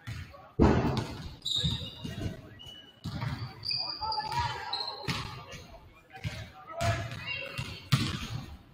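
Several basketballs bouncing irregularly on a hardwood gym floor, each bounce echoing through the large hall, with scattered voices in the background.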